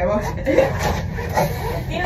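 Indistinct speech: a woman's voice talking quietly, over a steady low background hum.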